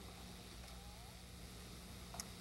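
Quiet studio room tone: a faint steady low hum with light hiss.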